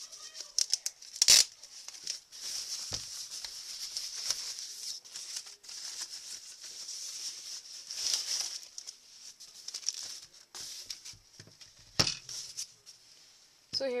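Thin plastic bag crinkling and rustling as a clock radio is pulled out of it, with two sharper, louder crackles, one about a second in and one near the end.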